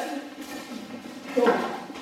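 A man's voice in a gym: the end of a spoken question, then a short call about one and a half seconds in.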